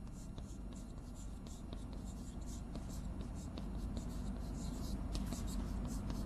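Chalk writing on a blackboard: quick, irregular scratches and taps of chalk strokes, growing a little louder toward the end.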